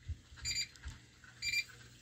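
Two short, high electronic beeps about a second apart, like an alarm or timer beeping in the background.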